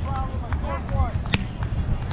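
Chatter of players and spectators on an outdoor sand court, with one sharp smack of a hand striking a volleyball about two-thirds of the way through.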